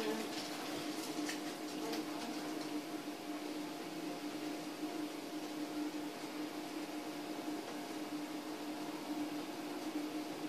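A steady low electrical hum with a faint, even hiss beneath it, and a few faint clicks in the first two seconds.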